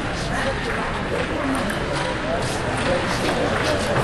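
Indistinct chatter of many voices, with a few light, sharp clicks of table tennis balls.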